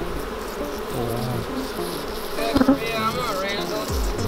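Honey bees from an open hive buzzing in a steady, continuous drone around a lifted brood frame.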